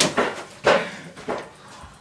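Several sharp knocks and thuds on the homemade wooden wrestling ring, spaced unevenly, with the two loudest at the very start and about two-thirds of a second in.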